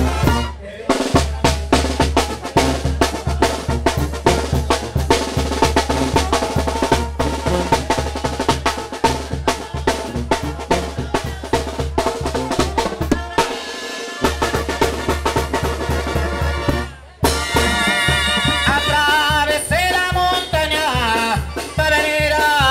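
Brass band music driven by a steady, heavy bass-drum and snare beat. A little over three quarters of the way through it breaks off briefly and a new passage begins with a plainer brass melody over the drums.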